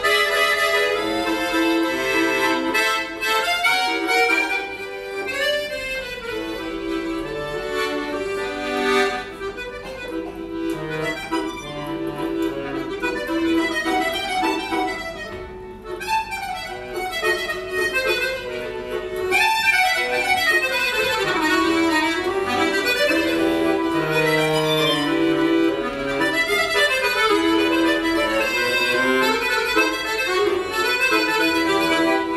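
Accordiola chromatic button accordion played solo: a dense, continuous stream of melody and chords, with a brief dip in loudness about halfway through.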